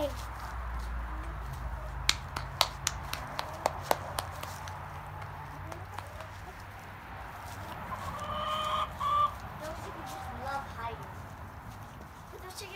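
Backyard hens clucking, with one drawn-out call in two parts about eight seconds in. Earlier, a quick run of sharp clicks.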